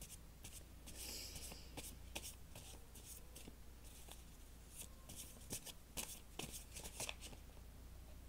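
Faint shuffling of a tarot deck: irregular light clicks and snaps of cards, with a short riffling rush about a second in, over a low steady hum.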